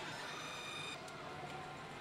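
A pachislot machine's electronic tone, several high pitches held together for about a second and then cut off, followed by a single click. Steady pachinko-hall din underneath.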